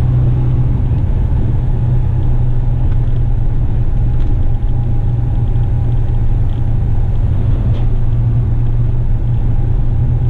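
Western Star truck's diesel engine and road noise heard from inside the cab while driving: a loud, steady low drone.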